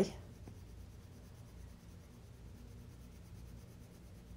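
Faint, steady scratching of a watercolor pencil tip rubbing over paper as a leaf is colored.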